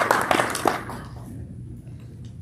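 Applause from a small audience, dying away about a second in and leaving a low steady hum of the hall.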